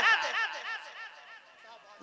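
A man's voice through a loudspeaker system with an echo effect: his last word repeats several times in quick succession, each repeat fainter, fading away within about a second and a half.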